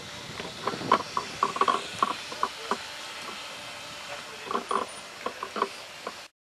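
Handling noise from a handheld camera being moved: irregular light clicks and knocks in two clusters, over a steady hiss.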